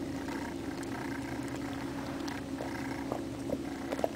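Basset hound snuffling and licking at the carpet around its food, heard as scattered small wet clicks and snaps over a steady low hum.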